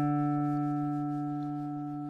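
A single low note on an acoustic guitar ringing out and slowly fading.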